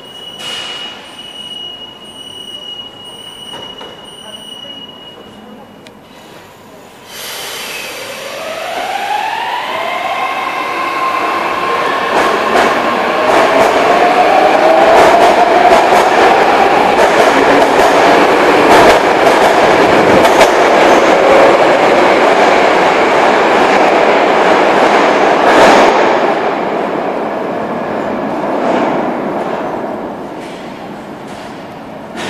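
An 81-723.1 metro train departing. A steady high tone runs for the first six seconds. About seven seconds in, the train starts with its traction motors whining upward in pitch, then levelling off. Wheels and running gear grow loud as the cars pass, and the sound fades near the end as the train goes into the tunnel.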